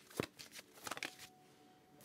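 Tarot cards being handled and shuffled: a quick run of light card snaps and flicks during the first second or so, then it goes faint.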